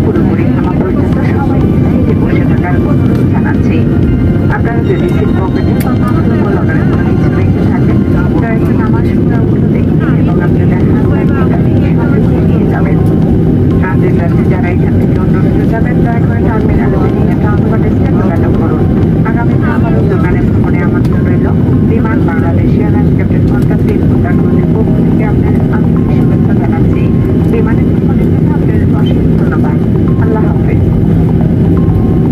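Cabin noise of a jet airliner taxiing after landing: a loud, steady hum of the jet engines at taxi power, heard from a window seat beside the engine. Passengers' voices murmur underneath.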